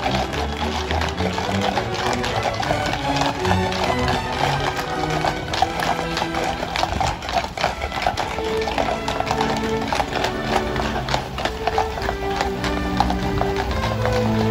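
Several police horses walking on asphalt, their hooves clip-clopping in many overlapping hoofbeats, with music playing throughout.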